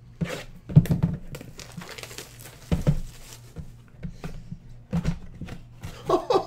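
Hands unwrapping and opening a sealed trading card box: crinkling of the plastic wrap, then rustles and knocks of the cardboard box and lid, the loudest about a second in, near three seconds and near five seconds.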